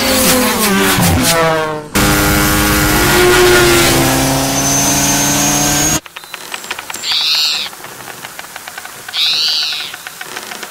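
Cartoon racing sound effects: a buzzing motor-like drone drops in pitch as a racer whizzes past, then holds as a steady drone for about four seconds. It cuts off suddenly, leaving faint clicking with two short squeaky calls.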